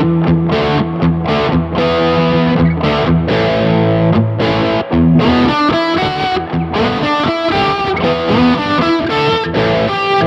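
Distorted electric guitar through a Mesa Boogie Dual Rectifier Tremoverb head in its vintage gain mode, heard through a Recto 1x12 cabinet with a Celestion Vintage 30 speaker. The guitar is an ESP KH-2 with EMG 81/60 active pickups, pushed by a 20 dB boost. It plays a continuous run of picked notes and chords that ring and sustain.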